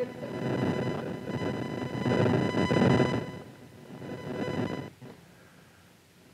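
Audience crowd noise from a seated room of people, swelling and ebbing in waves for about five seconds before dying away. A faint high-pitched whine sounds through the middle of it.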